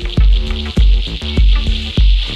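Live acid techno from Roland TB-303 bass synthesizers and a TR-606 drum machine: a kick drum about every 0.6 seconds under stepped, squelchy 303 bass lines, with a bright steady hiss above.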